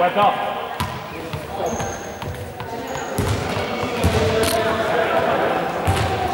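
A few separate ball thuds on a hard gym floor, echoing in a large sports hall, with voices talking in the background.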